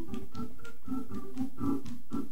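Organ music playing sustained chords that move between notes, with light percussive ticks recurring every few tenths of a second.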